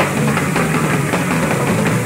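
Live rock band playing an instrumental passage, with drum kit, electric guitar and bass guitar.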